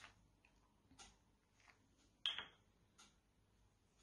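Near silence: room tone with a few faint short clicks about a second apart, the loudest a little past two seconds in.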